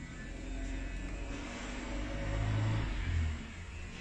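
A low rumble that swells about two to three seconds in and then fades, like a vehicle passing outside, over the faint scrape of a straight razor on a lathered scalp.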